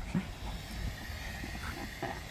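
Faint sounds of a small dog at play, mouthing at a hand on the grass, over a steady low rumble of wind on the microphone.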